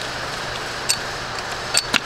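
Pliers clicking on metal as an old valve stem seal is gripped and pulled off a valve stem in a BMW N13 cylinder head: a few sharp clicks about a second in and twice near the end, over a steady background hiss.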